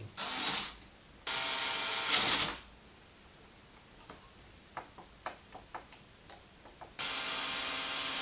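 Ryobi cordless drill-driver run in short trigger bursts, driving screws into a stack of steel toolpost blocks. There is a brief blip, then a steady run of about a second and a half that strains louder as the screw tightens, a few light metallic clicks as the parts are handled, and a second run of about two seconds near the end.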